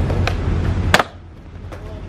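Skateboard wheels rolling on concrete, a sharp tail pop about a quarter second in, then a loud slam just before one second as skater and board hit the concrete after dropping down a three-block ledge on a failed heelflip late shuvit; after the slam the rolling stops.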